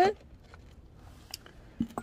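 Mostly quiet background, with a few faint light clicks and knocks toward the end as a small ceramic succulent pot is handled.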